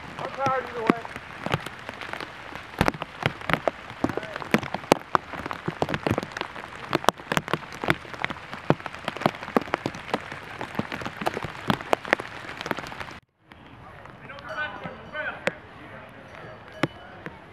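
Rain falling: many sharp raindrop ticks on a surface close to the microphone, dense and irregular, with a short voice about half a second in. The sound cuts out suddenly about 13 seconds in, and a quieter, softer wash with a faint voice follows.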